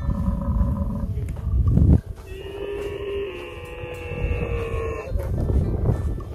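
Camel herders' long drawn-out calls to the herd: a short held call, then a longer steady one lasting about three seconds, over wind rumbling on the microphone.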